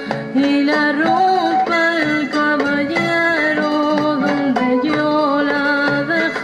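Live Cantabrian folk music: a melody of held notes stepping up and down, with a frame drum among the instruments.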